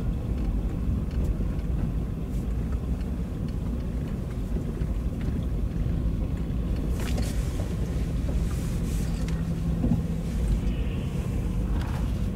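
A vehicle driving slowly along a dirt road, its engine and tyres making a steady low rumble.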